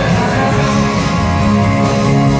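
Rock band playing live, the full band sounding together.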